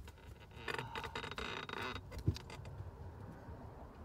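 Rustling and crinkling of takeout food packaging being handled for about a second, followed by a single dull thump.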